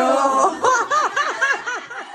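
A woman laughing: a held note of the voice, then a quick run of about six high-pitched laughs.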